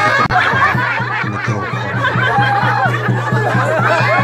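Music with a quick, steady beat, with crowd laughter and voices over it.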